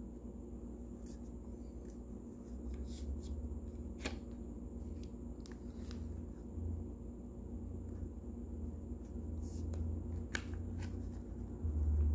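Trading cards being handled as a pack is opened and the stack slid out: faint scattered clicks and rustles of card stock over a low steady hum.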